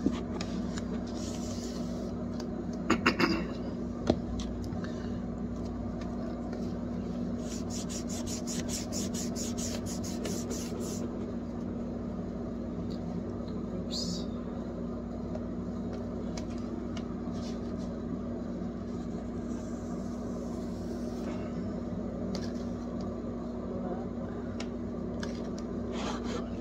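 A textured cleaning cloth being rubbed along a fridge's rubber door seal, a steady scrubbing and rubbing, with a quick run of short strokes about five a second near the middle.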